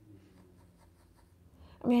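Faint, light scratching of a fingernail picking at nail polish, over a low steady room hum; a woman starts speaking near the end.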